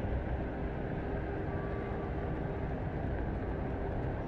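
Steady rushing noise of floodwater and rain, with a deep, even rumble underneath.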